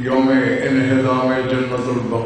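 A man's voice chanting one long drawn-out phrase into a microphone, held on a nearly steady pitch with only small wavers, as in an intoned recitation.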